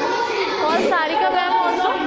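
Speech only: a woman's storytelling voice with children chattering over it.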